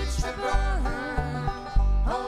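Country- or bluegrass-style music: a voice singing with vibrato over plucked string instruments and repeated bass notes.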